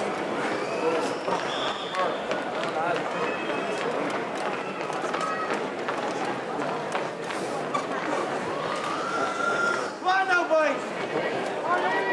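Several people's voices talking and calling out over one another, with one louder voice calling out about ten seconds in.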